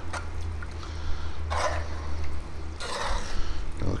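Thick chili being stirred with a metal spoon in a cast-iron pot: wet swishing and squelching of the beans, tomatoes and meat, louder twice, about a second and a half in and again near three seconds. A steady low hum runs underneath.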